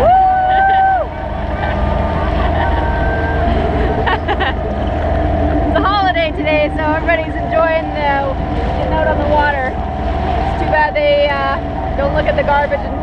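Small outboard motor on an inflatable dinghy running steadily underway, with wind on the microphone. Right at the start a single flat tone sounds for about a second, and from the middle on people talk and laugh over the motor.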